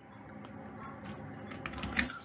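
Several light clicks at a computer over a low steady hum, with a sharper knock near the end.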